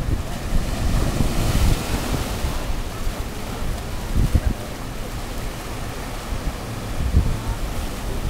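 Ocean surf washing over and around shoreline rocks, with a stronger surge of foamy water about one to three seconds in. Wind buffets the microphone in irregular low gusts.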